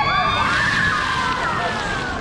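Water jets of a floor fountain spraying up from wet paving, a steady hiss that swells in the middle, with children's high gliding shrieks over crowd noise.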